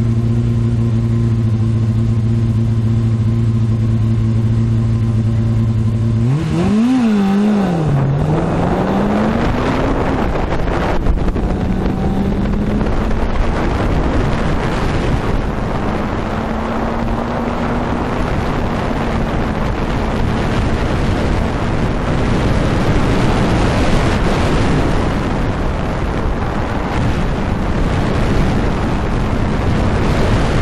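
Fiat 850 Spider race car's four-cylinder engine heard from the cockpit during an autocross run. It holds a steady note for about six seconds, then the revs swing sharply up and down, then rise and fall gently under load over a loud, steady rushing noise.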